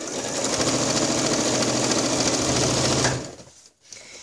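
Janome computerized sewing machine stitching steadily through fabric, then stopping about three seconds in.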